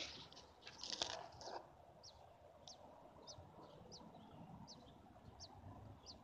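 A series of faint, short, high peeps, a little more than one a second, from American robin nestlings begging in the nest. A couple of brief rustles come in the first second and a half.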